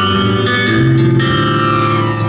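Live band playing an instrumental passage of a pop song, with electric guitar to the fore over double bass and drums, and long held notes.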